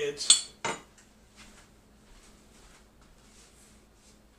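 Stainless steel ladle clinking against metal twice, a sharp ringing clink and a second one just under half a second later, followed by faint handling sounds.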